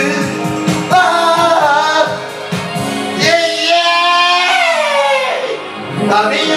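A pop song sung as a cover over a backing track. A regular beat runs in the first second, then come long held sung notes, the last one sliding down in pitch near the end.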